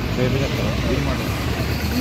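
Indistinct voices of people talking at a distance over a steady low rumble.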